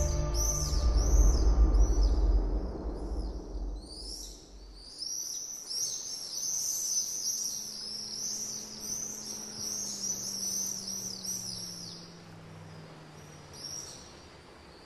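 Background music fading out over the first few seconds, giving way to a dense run of high-pitched bird chirps that thin out near the end. A faint, low, steady hum runs underneath.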